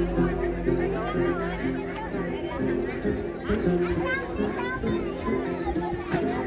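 Then folk music: a đàn tính lute plucked in a repeating pattern of short low notes, with voices and children's chatter over it.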